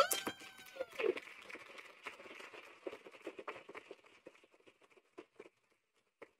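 A small group applauding, opening on the end of a cheered "woo"; the clapping thins out and dies away over about four seconds, with a few last claps near the end.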